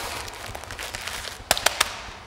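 A packet of dried seeds set down on a stacked wall of seed packets, crackling in a quick run of sharp clicks about one and a half seconds in, over a low steady hum.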